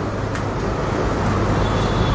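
Steady background rumble and hiss with a low hum underneath, in a pause between spoken phrases.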